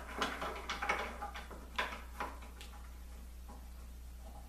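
Short wooden and metal knocks and clicks as a wooden block is handled and fitted against a Dowelmax doweling jig on the end of a board, several in quick succession over the first two seconds or so. After that only a steady low hum remains.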